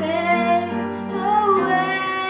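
A young girl singing a hymn into a microphone, holding long notes over soft instrumental backing.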